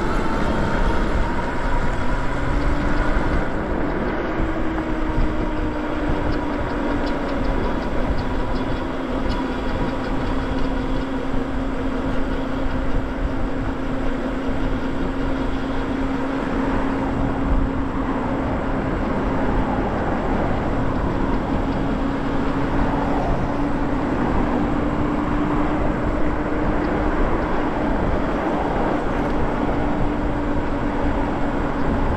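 Electric bike's hub motor whining under power. Its pitch rises over the first few seconds as the bike speeds up from a stop, then holds steady at cruising speed, over a constant rush of wind and tyre noise.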